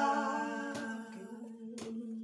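Three women singing a cappella, holding the last note of a phrase. The chord fades over the first second and leaves one lower note held softly to the end.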